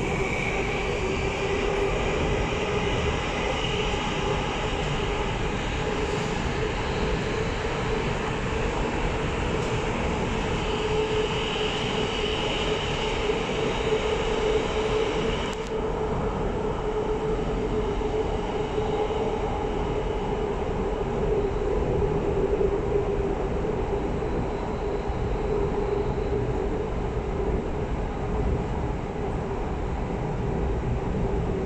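Bombardier Movia C951 metro train running through a tunnel, heard from inside the car: steady running noise with a steady hum and a higher-pitched tone that fades out about halfway through.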